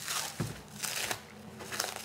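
Clear plastic stretch wrap crinkling and tearing in short, irregular scratches as it is pulled by hand off a rolled leather hide.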